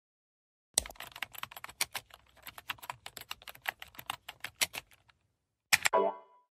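Computer keyboard typing sound effect: a quick, uneven run of key clicks lasting about four seconds, followed by a brief sharp sound just before the end.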